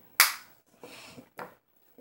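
A sharp click from makeup cases being handled, like a compact or palette lid snapping, followed by a soft brief rustle and a fainter second click about a second and a half in.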